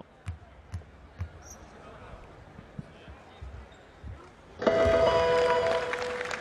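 A basketball being bounced on a hardwood court by a free-throw shooter: a series of short low thumps, about two a second at first. About four and a half seconds in, a loud burst of arena noise with several steady held tones takes over.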